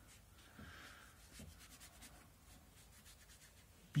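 Faint rubbing and light scuffing of a hand working over a sheet of watercolour paper, with a few soft ticks.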